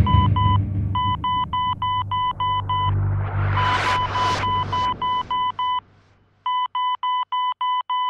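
Electronic music built on rapid, even beeps like a heart monitor's, about four a second, over a low bass drone that fades out about six seconds in. A hissing swell rises and falls through the middle.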